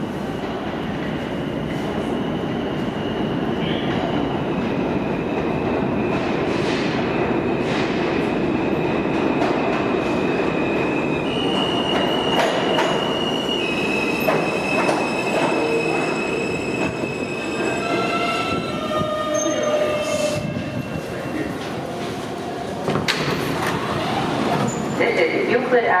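R160A-2 subway train pulling into an underground station: a steady rumble of cars and wheels on the rails, with high, steady wheel squeal. Near the end comes a whine that falls in steps as the train slows to a stop.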